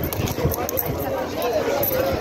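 Crowd chatter from many people talking at once, with irregular footsteps on pavement close to the microphone.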